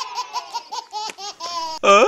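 A baby laughing hard in a rapid string of short, high-pitched laugh pulses, several a second. A loud voice cuts in near the end.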